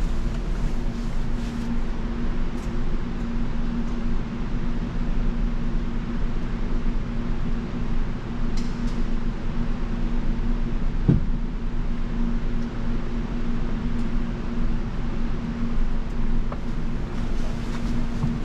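Steady fan-like mechanical hum with a low drone and a faint steady tone, heard inside a parked car's cabin. A single brief thump comes near the middle.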